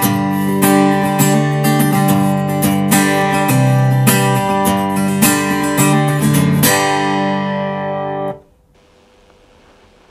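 Acoustic-electric guitar strummed in chords through a Blackstar ID:Core BEAM amp on its first acoustic voicing, a flat response that lets the guitar's own tone through. The last chord rings on and is cut off about eight seconds in.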